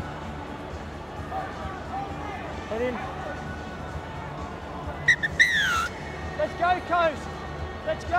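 Stadium crowd murmur with occasional calls and shouts from players as a scrum is formed. About five seconds in, a whistle gives two short pips and then a longer note that falls in pitch, followed by a few high shouted calls.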